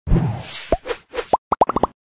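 Animated-logo sound effects: a short swish at the start, then a run of short rising bubble-like pops that come faster and closer together toward the end.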